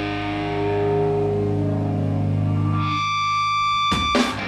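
Distorted electric guitar holding a ringing, sustained chord with no drums under it. About three seconds in, the low chord drops away, leaving one high held note, and right at the end the drums crash back in with the full band.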